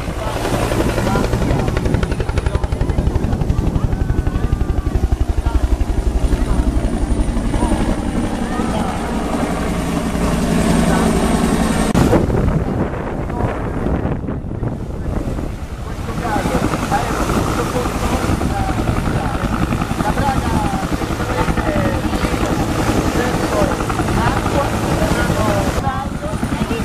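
Military utility helicopter with a two-bladed main rotor flying low over the sea, its rotor and turbine running steadily with a deep, throbbing hum. The sound changes abruptly about halfway through and dips briefly before the helicopter noise returns.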